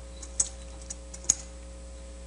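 A few short, sharp taps and clicks, the loudest about a second and a quarter in, over a steady electrical hum.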